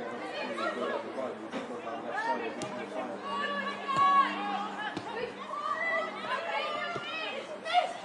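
Several people talking and calling out at once, a steady chatter of voices at a football match, with a few sharp knocks of the ball being kicked.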